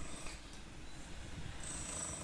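Faint outdoor background noise with a low rumble and no clear single event.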